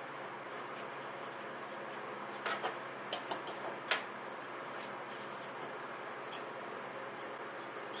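Paper coffee filter being cut with scissors and handled: a few soft rustles and clicks between about two and a half and four seconds in, ending in one sharp click, over a steady low hiss.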